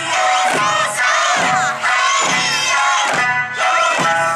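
Eisa drum dance: a group of children shouting in unison and striking paranku hand drums and larger drums in regular beats over music.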